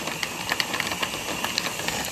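Countertop blender running at full speed, churning frozen fruit and milk, with frequent sharp clicks of frozen chunks striking the blades and jar. It cuts off abruptly at the very end.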